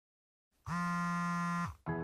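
Smartphone alarm going off: a steady electronic tone about a second long, then a second tone begins just before the end.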